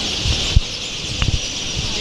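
Outdoor ambience: a steady high hiss, with irregular low rumbles of wind buffeting the microphone and a faint click about half a second in.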